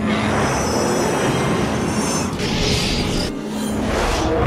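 Dramatic soundtrack music layered with loud, dense mechanical noise effects, with a brighter hissing stretch a little past halfway.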